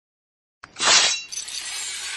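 Intro logo sound effect: a sharp slashing burst about three-quarters of a second in, then glass shattering, with the crash and tinkling carrying on past the end.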